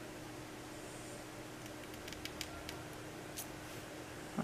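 Scissors snipping a narrow strip of cardstock to cut a flag end into it: a few faint, short snips in the second half, over a low steady hum.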